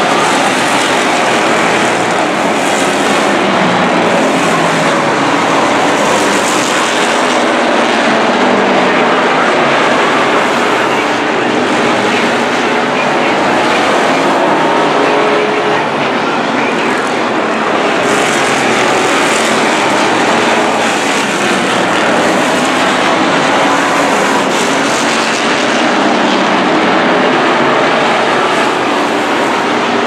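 A pack of street stock race cars running hard around an oval, their V8 engines merging into a loud continuous drone that swells and eases every few seconds as cars pass by.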